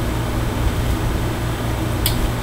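Steady low hum with a hiss underneath: the room's background noise during a pause in talk.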